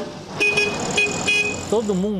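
A small vintage car horn, the VW Beetle's, tooting in a quick series of short beeps over road noise. A man's voice starts near the end.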